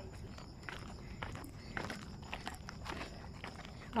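Footsteps of hikers walking down stone trail steps: faint, irregular scuffs and taps of trainers on stone, about two a second.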